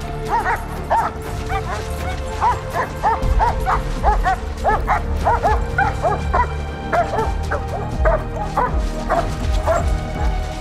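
Police search dog barking and yipping excitedly in quick runs of short, high barks, about three a second, over steady dramatic background music.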